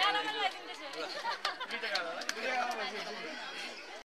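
Several people talking at once in overlapping chatter, with a few short clicks near the middle.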